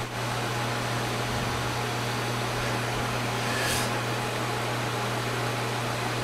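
Metal lathe running steadily with a low hum while a carbide insert takes a roughing cut on a stainless steel part, removing the bulk of the material before the finishing pass.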